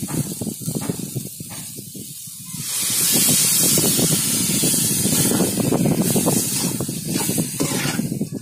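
Onion-tomato masala frying with a crackle in a hot pot. About two and a half seconds in, tamarind water is poured in and the pot breaks into a loud, steady hiss of liquid sizzling on the hot masala.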